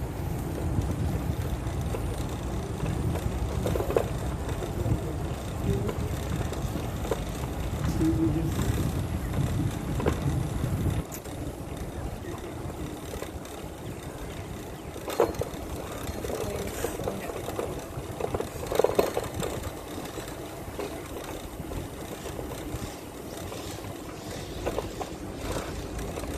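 Bicycle being ridden along a concrete path: a steady low rumble that drops off about halfway through, with a few short knocks and rattles.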